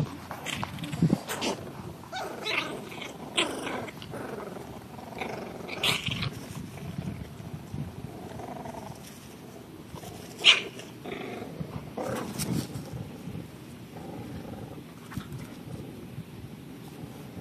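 English bulldog puppies, seven weeks old, growling and grunting in short irregular bursts as they play-fight in grass. About ten seconds in there is a single sharp, louder noise.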